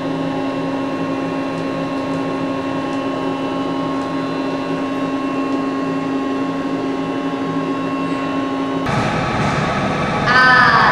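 A steady machine hum made of a few constant tones. About nine seconds in it cuts off abruptly and is replaced by a rougher, noisier background.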